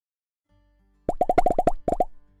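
Logo-animation sound effect: a rapid run of about seven pitched plopping pops, then two more just before the end, over faint background music.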